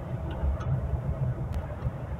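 Engine and road rumble heard inside a Chevrolet car's cabin as it drives on a rough dirt track, accelerating toward a shift into third gear, with one faint click about one and a half seconds in.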